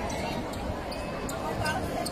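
Basketball bouncing on the court, a few irregular thumps, with faint voices in the background.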